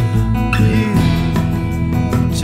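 Instrumental break in a band recording: strummed guitar over bass guitar and drums.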